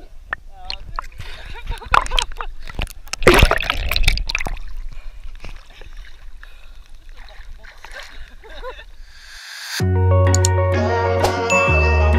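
Water splashing and sloshing around a camera that dips in and out of the water as swimmers move, the loudest splash about three and a half seconds in. Background music comes in near the end.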